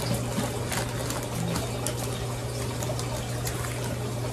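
Steady hissing background noise with a constant low hum beneath it, and a few faint knocks.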